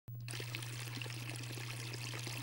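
Water running off the edges of a table-like fountain sculpture and falling as a curtain of thin streams, a steady pouring trickle, with a steady low hum underneath. The sound cuts in at the very start.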